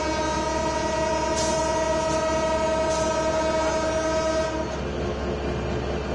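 Diesel locomotive's horn sounding one long, steady blast that cuts off about four and a half seconds in, over a low rumble.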